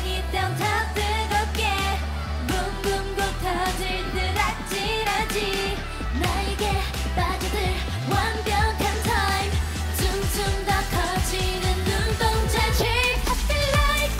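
K-pop girl-group song: female vocals singing over a funky dance-pop backing track with a steady bass and beat.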